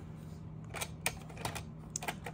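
Several light clicks and taps from the plastic case and loose trim piece of a PowerBook 3400c laptop being handled, mostly in the second half.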